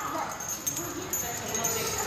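Faint background voices with a steady, thin high-pitched whine underneath, between the louder nearby speech.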